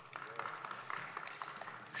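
Faint ambience of a large assembly hall: a low murmur with scattered small clicks.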